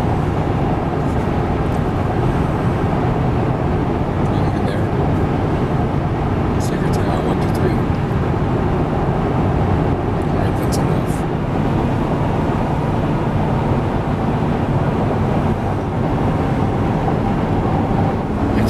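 Steady road and engine noise inside a moving car's cabin, with a few faint brief sounds over it.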